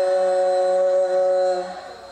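A voice over a loudspeaker chanting a prayer, holding one long steady note that fades away near the end.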